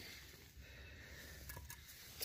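Near silence: faint outdoor background, with a couple of soft clicks about one and a half seconds in.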